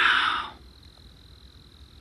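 Crickets trilling steadily on one high note. In the first half-second there is a brief, louder burst of noise.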